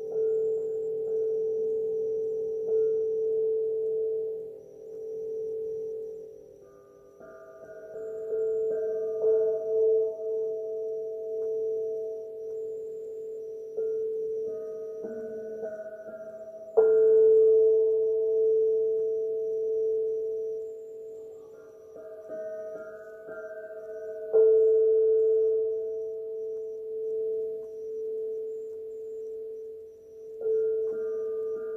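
Hand-held metal sound-healing instruments hanging from cords, struck with a mallet and left to ring in long, overlapping sustained tones that swell and fade. Fresh strikes come about 7, 17 and 24 seconds in, the one at 17 seconds the loudest.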